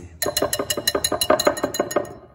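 Wire whisk stirring thick chocolate batter in a glass bowl, its wires clicking against the glass about eight times a second, each click followed by a faint ring.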